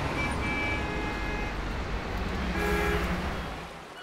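Steady low rumble of distant city traffic with two short car-horn toots, one near the start and one about two and a half seconds in; the rumble fades near the end.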